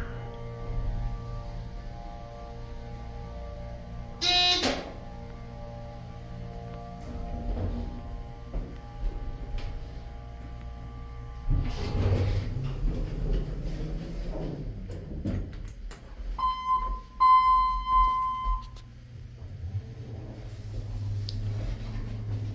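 Soft piano background music, with a short bright chime about four seconds in. Later comes the rumble of the elevator doors sliding and the car starting off, a two-part electronic beep about 17 seconds in, and the low hum of the 2008 ThyssenKrupp/Vertical Express hydraulic elevator under way.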